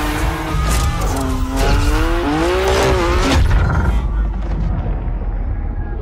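A sports car engine revving up and down hard while its tyres squeal and skid, under background music. The engine note breaks off about three and a half seconds in, leaving mostly tyre and skid noise.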